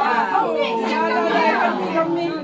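Overlapping voices of a group of people talking and calling out at once, a steady chatter.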